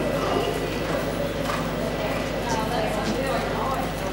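A horse's hoofbeats in the three-beat rhythm of a lope on soft dirt arena footing, with a steady low hum underneath.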